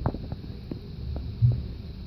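Handling noise from a phone being moved while filming: soft low thumps, the loudest about a second and a half in, and a few faint clicks over a steady low hum.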